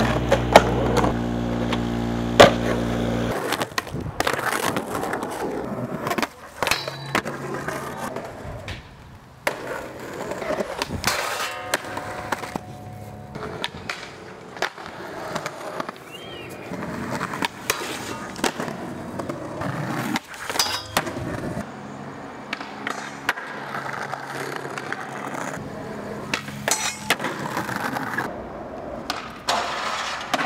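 Skateboard wheels rolling on concrete, broken by sharp clacks and knocks of tail pops, landings and grinds or slides on ledges and rails, one trick after another.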